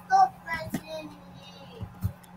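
A voice singing in short pitched phrases that fade after about a second, over a steady low hum.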